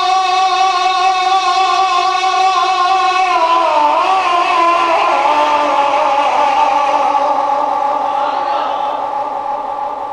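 A man's voice singing one long held note into a microphone in naat recitation. About three seconds in, the pitch dips and wavers in an ornamented run, then settles on another long note that slowly weakens near the end.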